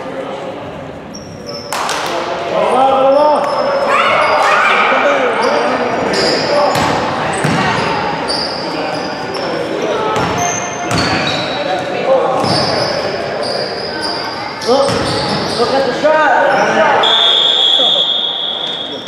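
A basketball bounces and is dribbled on a gym floor, with sneakers squeaking and players and spectators shouting in a large, echoing gym. A whistle blows for about a second near the end.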